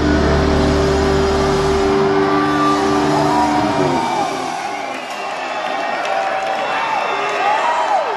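Heavy metal band's electric guitars and bass holding a sustained chord that rings out and stops about four seconds in. Crowd cheering follows, with rising-and-falling whoops.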